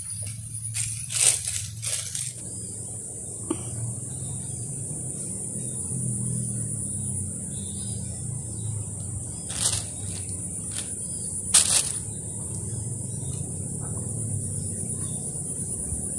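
Insects droning steadily at a high pitch over a low rumble, with a quick cluster of scuffing knocks in the first two seconds and two loud sharp clicks about ten seconds in and again about two seconds later.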